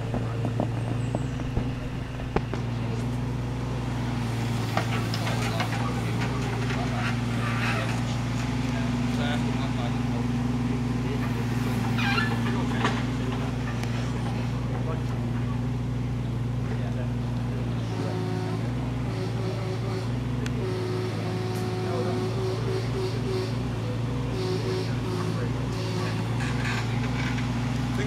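Mini excavator's diesel engine running steadily while it digs, with a shift in its note about two-thirds of the way through.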